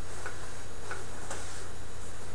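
Three light, irregularly spaced clicks over a steady low hum.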